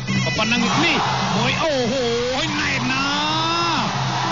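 Traditional Cambodian boxing music from the ringside band: a sralai reed oboe plays a nasal, wavering melody of long sliding notes, each about a second, over the steady pattern of skor drums. This is the music that accompanies a Kun Khmer bout while the round is fought.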